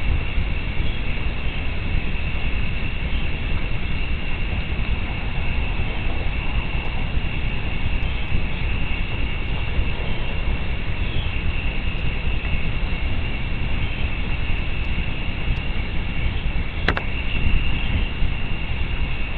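Steady outdoor night ambience on a nest-camera microphone: a constant low rumble under a steady high-pitched drone of night insects, with one sharp click about seventeen seconds in.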